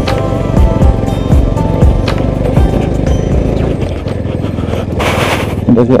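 Background music with a steady beat. About five seconds in there is a short rush of noise, and a laugh follows at the very end.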